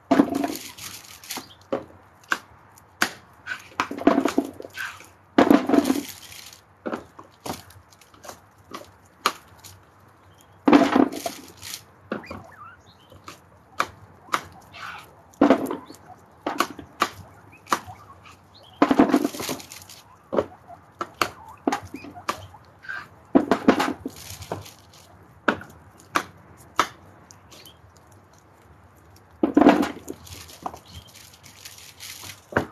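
Knife chopping vegetables on a board, in short irregular runs of knocks with a louder burst every few seconds, among the many small crisp clicks of a large group of guinea pigs nibbling and crunching food close by.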